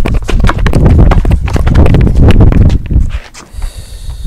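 Basketball dribbled on a concrete driveway: a run of quick bounces over a heavy low rumble, dropping off about three seconds in.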